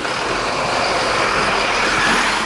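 A vehicle passing close by: a steady rushing noise that grows a little louder.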